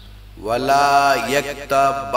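A man's voice starts melodic Arabic Quran recitation (tilawat) about half a second in, drawing out long held notes that glide from pitch to pitch.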